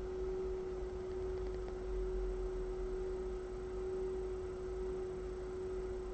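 A single steady pure tone held unchanged, over a faint low rumble.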